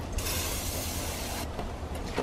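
Aerosol can of Easy-Off fume-free oven cleaner spraying in one continuous hiss that stops about a second and a half in.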